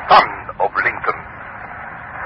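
Voices speaking on an old, narrow-band radio recording: short phrases in the first second, then quieter, indistinct talk.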